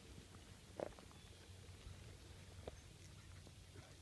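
Near silence outdoors: a faint low rumble with two soft ticks, about a second in and again near three seconds in.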